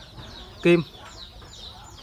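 Faint, high-pitched chirping of birds in the background, a steady run of short peeps.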